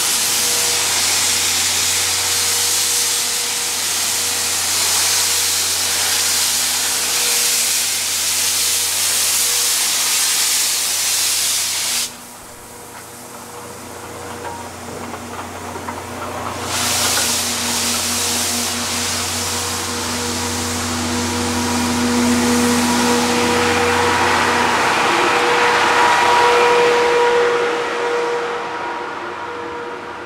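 D51 steam locomotive starting away, with a loud, steady hiss of steam blown from its cylinder drain cocks. The hiss cuts off suddenly about twelve seconds in and comes back some four seconds later as the engine passes close by, then dies down near the end as the coaches roll past.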